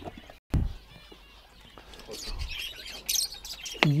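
Caged lovebirds chirping, with many short, high calls, together with a brief knock about half a second in.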